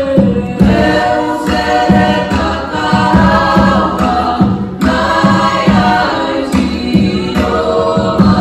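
A large group of voices singing a Pacific Island song together in chorus, over a regular beat.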